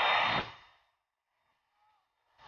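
Jet engine noise from the taxiing Airbus Beluga transport plane: a steady rush with a high whine. It fades out within the first second and gives way to near silence.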